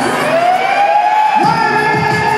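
Live arena concert sound: a single long high note slides slowly upward and is held over the music. Fuller band sound comes back in about a second and a half in.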